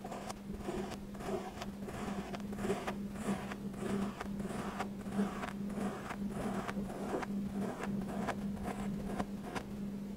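Kinetic sand being cut and scraped with a tool: short, crunchy, rasping strokes, a few a second at an uneven pace. A steady low hum runs underneath.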